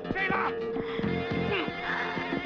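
Film score with a steady held tone and percussive hits, with short, high, wavering cries over it at the start and near the end.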